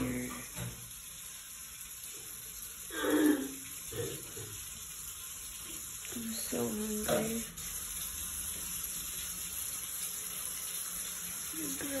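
Kitchen tap running steadily into a stainless steel sink.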